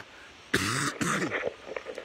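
A man clearing his throat about half a second in: a rough, breathy rasp followed by a short voiced grunt.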